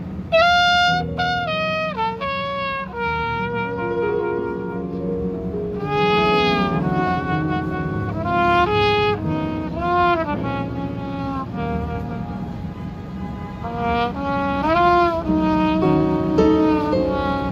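Jazz combo playing live: a trumpet carries the lead line in phrases of short and held notes, some bent or slurred, over piano, bass and drums.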